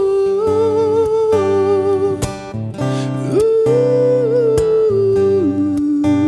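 Live worship band with a male lead singer holding a wordless 'uh' melody in long sung notes with vibrato, over strummed acoustic guitar, bass, keyboard and drums.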